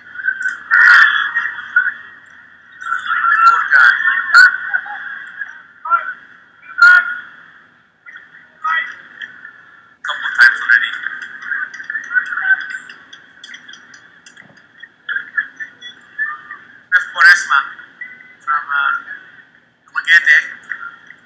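A muffled, thin, narrow-band broadcast commentator's voice comes in broken stretches, with the words unclear. It stops and starts abruptly several times.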